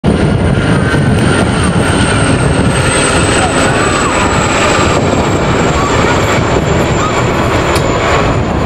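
Formation flypast of Aérospatiale Gazelle helicopters and Van's RV-8 propeller aircraft: a loud, steady mix of engine and rotor noise, with a thin high whine that slowly falls in pitch.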